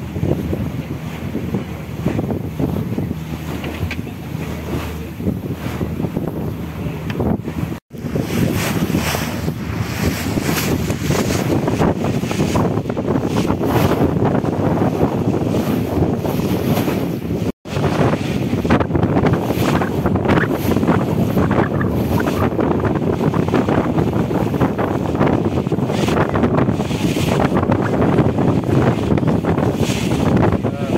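Wind buffeting the microphone over the wash of sea water around a moving boat, a steady rough rushing noise. It drops out abruptly for an instant twice, once about a quarter of the way in and again a little past the middle, where the recording is cut.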